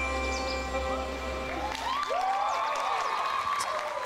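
Sustained, held musical chord that dies away about two seconds in, as the audience breaks into cheering and scattered applause.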